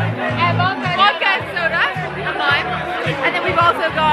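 Background music with a bass line of short repeated notes, under the chatter of many people talking at once.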